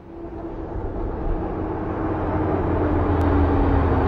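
A vehicle's engine and road noise fading in from silence and growing louder, with a steady low drone whose pitch sags slightly.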